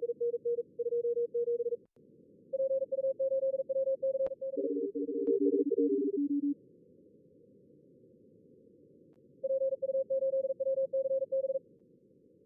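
High-speed Morse code (CW) from a contest logger's practice simulator: runs of keyed beeps at one pitch, and about five seconds in several stations keying at once on slightly different, lower pitches, over a steady low receiver hiss.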